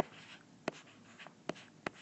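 A stylus writing on a tablet screen: faint scratching of the pen tip with three short sharp taps, the last two close together.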